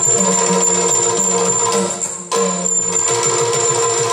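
Yakshagana ensemble playing: a steady held drone with rapid drum strokes and jingling percussion. The music drops briefly a little over two seconds in, then resumes.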